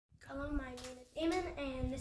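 A boy's voice speaking: speech only, no other clear sound.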